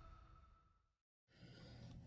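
Near silence: the last of the intro music fades away, a moment of dead silence follows, then faint room tone.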